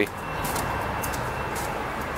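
Steady outdoor vehicle noise: an even hiss and rumble that holds level throughout.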